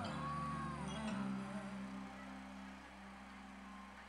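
Live band holding soft sustained chords with no drums. A held note slides down about a second in, after which the chords drop quieter.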